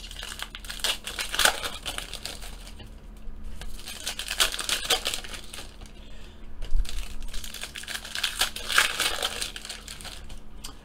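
Foil wrappers of 2016-17 Panini Donruss Optic basketball card packs crinkling and rustling as they are handled and torn open, in irregular bursts with small clicks of cards being handled.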